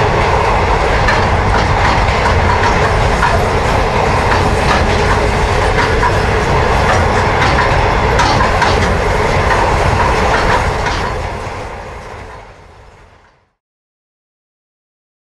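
A train running on the rails: a steady rumble with repeated clicks from the wheels. It fades out about two seconds before the end.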